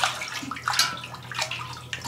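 Wort sloshing and swishing in a stainless steel brew kettle as it is stirred with a long metal spoon, in several irregular strokes, mixing in freshly pitched lactobacillus for kettle souring.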